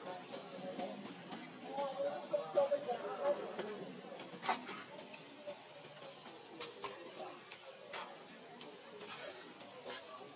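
Indistinct voices talking in the background, loudest about two to three seconds in, with a few sharp clicks scattered through the second half.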